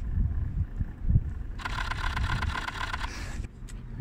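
Street traffic and low wind rumble on the microphone. About a second and a half in, a passing vehicle's engine note rises above it for under two seconds, then stops.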